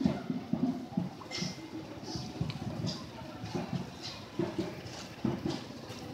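A small crowd walking slowly: irregular footsteps and shuffling with faint, indistinct murmurs.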